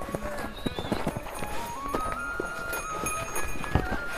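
A horse's hooves stepping on hard-packed, icy snow as it is led past, in irregular knocks mixed with people's footsteps. Background music with a melody of held notes plays over it.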